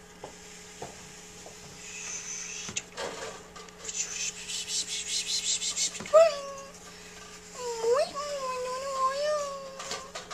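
Graphite pencil scratching over tracing paper in quick repeated strokes as lines are gone over to transfer a drawing. About six seconds in, a wavering, high-pitched vocal sound starts, and it glides up and down through the end.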